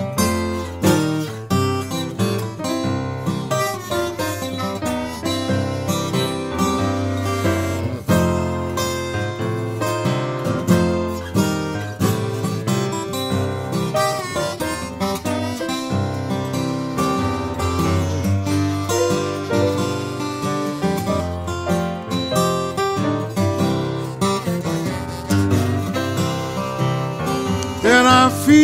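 Acoustic blues guitar playing an instrumental passage, with picked notes over a steady bass line and no singing.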